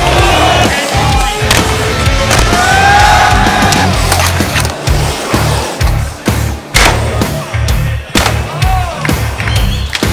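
Skateboard wheels rolling and carving across a concrete bowl, with sharp clacks of the board, the loudest about two-thirds of the way through. Loud backing music with a steady heavy beat plays over it.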